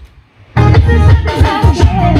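Music with singing and heavy bass, starting abruptly about half a second in and playing loud through a home-built three-way speaker box (a 1,500 W RMS woofer, a midrange and a tweeter) driven by a small 400 W RMS amplifier module.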